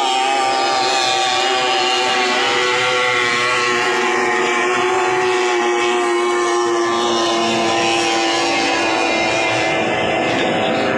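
Outboard engines of 30 hp three-cylinder race boats running flat out, a steady loud engine whine. Its main pitch sinks slowly over the second half.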